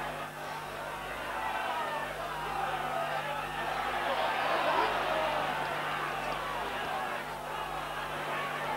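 Rugby league stadium crowd: a general hubbub of shouts and chatter from the terraces that swells slightly midway, over a steady low hum.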